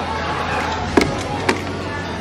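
Two sharp taps about half a second apart, over a steady low hum and background room noise.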